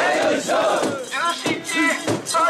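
A crowd of mikoshi bearers shouting a festival chant together, many men's voices overlapping in a loud group call.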